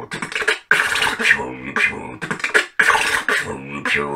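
A man beatboxing: a fast run of mouth-made drum hits and hissing snares mixed with hummed, pitched vocal tones, broken by two short pauses.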